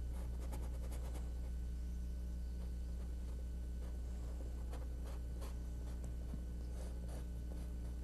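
Paintbrush scratching lightly over canvas in short, irregular strokes as acrylic paint is dry-brushed on, over a steady low electrical hum.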